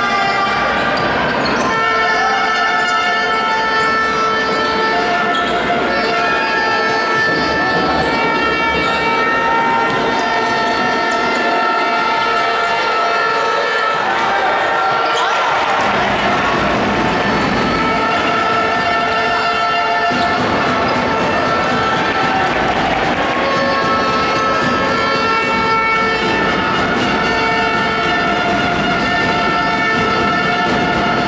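Basketball game on a hardwood court: the ball bouncing amid steady crowd noise in a large hall. Over it, several sustained horn-like tones at different pitches overlap, each held for seconds at a time.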